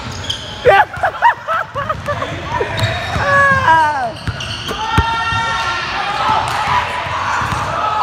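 Basketball bouncing on a hardwood gym floor during a pickup game, with a sharp bounce about five seconds in. Players shout and call out over it.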